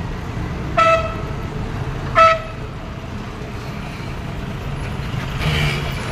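Steady rumble of road traffic with two short vehicle horn toots, about a second and a half apart, in the first half.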